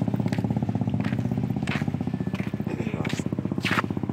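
Motorcycle engine running steadily with a fast, even putter, with a few short hissy sounds over it.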